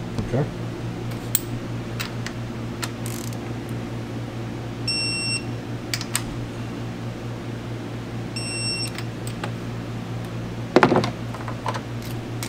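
Torque wrench beeping twice, a few seconds apart, as rocker-arm jam nuts reach their 48 ft-lb setting. Light tool clicks and a steady hum run under it, with a louder knock near the end.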